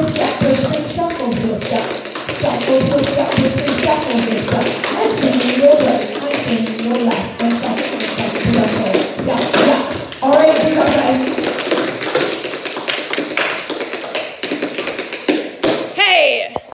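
Several dancers' tap shoes striking the studio floor together in quick, uneven runs of taps, with a woman's voice over a microphone going on alongside.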